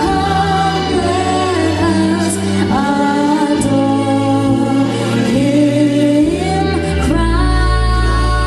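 A girl sings a slow solo through a microphone over an instrumental backing of held bass notes. The backing drops to a deeper bass note near the end.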